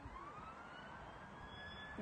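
A siren wailing, one long tone rising slowly in pitch.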